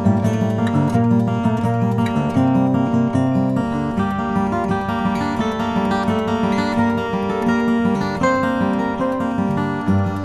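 Maingard GC grand concert acoustic guitar, with Brazilian rosewood back and sides and an Italian spruce top, played fingerstyle: a picked treble melody over bass notes. A low bass note is held from about four seconds in until near the end.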